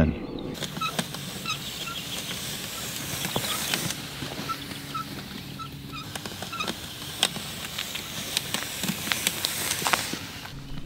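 Outdoor ambience with a bird calling in short, repeated high notes, over a low steady hum and scattered light clicks.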